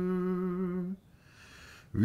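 A man chanting Icelandic rímur with a single voice: a long held note that ends about a second in, then a short pause before the next phrase begins, rising in pitch, at the very end.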